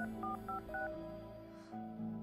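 Phone keypad dialing tones: a quick run of four short two-note beeps in the first second as a number is keyed in, over soft background music.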